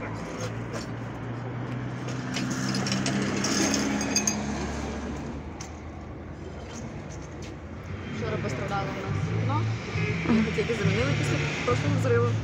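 Broom and dustpan scraping and clinking over broken glass on paving, under a steady low hum of street background. Faint voices are in the background in the second half.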